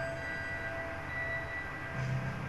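Piano strings ringing out softly, a few high bell-like tones slowly fading over a steady low hum.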